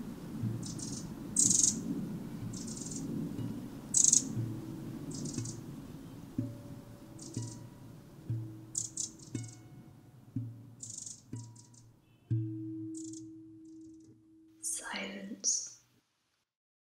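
Electronic sound-art soundscape: a low, shifting hum with short bursts of high hiss at fairly even spacing, thinning out over time. A single low tone is held for a couple of seconds about three-quarters of the way in, then a brief sweeping sound plays just before everything cuts off.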